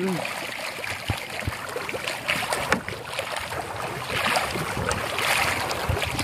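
Wooden paddles stroking through lake water beside a small boat, with water swishing and splashing, two broader swells of water noise late on, and a few light knocks in the first seconds.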